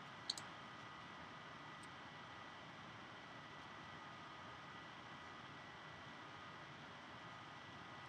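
Near silence: room tone with a faint steady hiss and a thin high tone, and one short sharp click just after the start.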